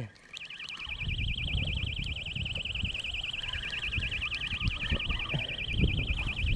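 A high warbling tone, like an electronic alarm, starts a moment in and holds steady, over low rumbling and knocks of a spinning rod and reel being handled while a catfish is played in.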